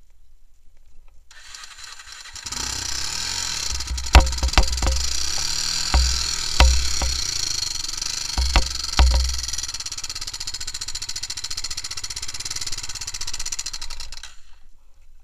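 Honda TRX300EX quad's air-cooled single-cylinder four-stroke engine starting about a second in, then running as the quad rides over rough ground. About six sharp, loud thumps and knocks come between four and nine seconds in.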